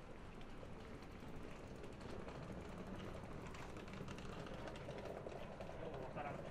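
Quiet city street ambience with a run of rapid light ticks or clicks that grows busier from about two seconds in.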